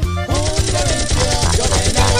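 Mexican regional band music with accordion playing, with a short break in the sound at the very start.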